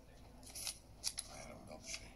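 Pages of a small paper notebook being handled at a table: a few short, crisp rustles and snaps, the sharpest about a second in, with soft dialogue under them.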